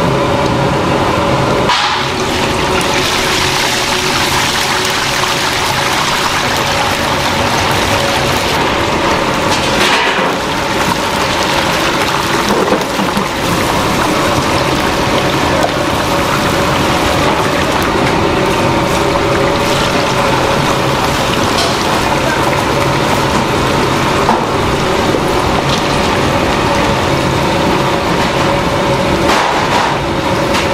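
Batter-coated chicken deep-frying in a large fryer of hot oil: a loud, steady bubbling sizzle, with a low steady hum underneath. For the first two seconds, before the sizzle, there is wet squishing of chicken pieces being mixed by gloved hands in batter in a steel bowl.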